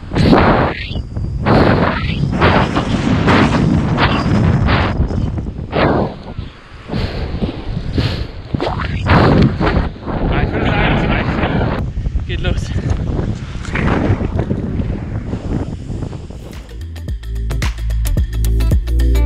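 Strong sea wind buffeting the microphone in loud, uneven gusts. Music with a steady beat comes in near the end.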